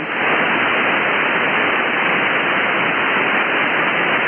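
Steady hiss of HF band noise from the receive audio of an Elecraft K3 transceiver on lower-sideband voice, with no station transmitting. The hiss is even and stops sharply at the top of the receiver's narrow voice filter.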